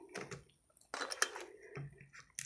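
A plastic bottle of acrylic nail liquid being handled on a glass tabletop: a few faint, scattered clicks and taps, with a small cluster about a second in.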